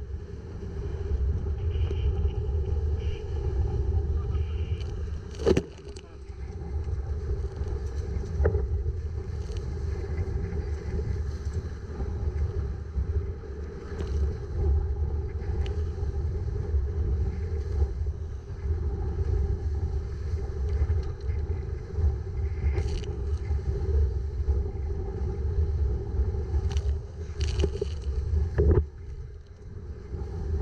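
Wind buffeting the camera's microphone in a constant low rumble over rushing water as a Hobie Cat 16 catamaran sails at speed through chop. Sharp slaps of spray hit the camera several times, the loudest about five seconds in and again near the end.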